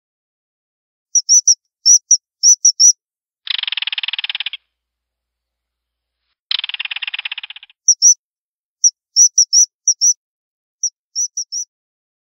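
Bird calls: quick runs of short, high, piercing whistled notes, with two harsh rattling buzzes of about a second each in the middle, the first about three and a half seconds in and the second about six and a half seconds in. The whistles return in a longer run near the end.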